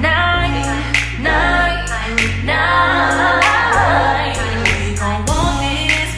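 A song: a singer holds long, drawn-out sung notes over a slow beat with deep bass and a sharp drum hit about every second and a quarter.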